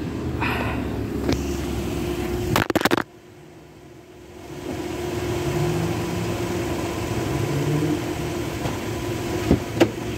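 A car engine idling, heard from inside the car. A quick cluster of loud knocks comes nearly three seconds in, and the sound then drops away for about a second and a half before the steady engine hum returns. Two more sharp knocks come near the end.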